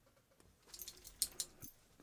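Faint small clicks and rustling, a brief cluster of light ticks about a second in.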